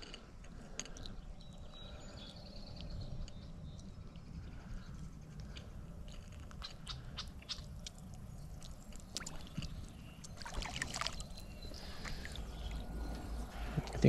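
Quiet handling sounds of fishing tackle: scattered small clicks and rustles as a fish is unhooked and the hook re-baited, over a low steady rumble.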